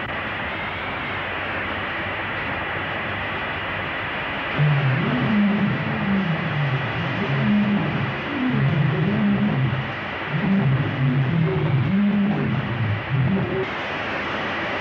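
Steady hiss of an old optical film soundtrack with a faint high whine; about four and a half seconds in, a low melody of notes stepping up and down begins and runs until just before the end.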